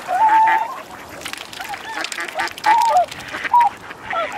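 Swans calling: a long honk in the first half second, then a string of shorter honks.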